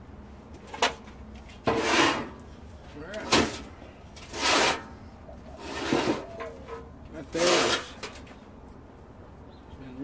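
Refractory mix being worked onto a propane forge shell with a hand tool: about six short scraping strokes, roughly a second apart, then a pause near the end.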